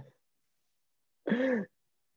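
Video-call audio cutting out: a clipped fragment of a voice, then dead digital silence, then a short vocal sound of about half a second near the middle before the line drops again.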